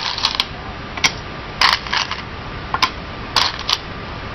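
Go stones clacking against one another in a wooden bowl as a hand picks through them: a run of sharp, irregular clicks, about nine over a few seconds.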